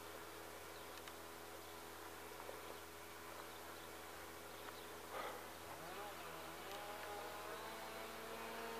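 Faint whine of the electric motor of an A.R.O. model Fox RC glider flying at a distance, its pitch rising and wavering from about six seconds in. A brief rustle comes about five seconds in.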